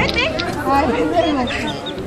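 Several people talking at once in overlapping chatter, some voices high-pitched.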